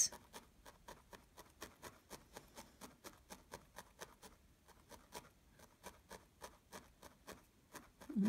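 A felting needle stabbing repeatedly into wool fibres on a felt background, making faint, quick, regular ticks at about five a second.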